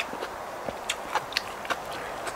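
Close-up eating sounds of a cucumber salad with rice noodles: irregular wet chewing clicks and crunches, several a second, over a steady background hiss.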